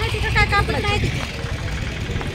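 A woman talking over a steady low rumble of street noise.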